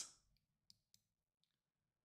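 Near silence broken by about four faint, short computer mouse clicks spread over the first second and a half.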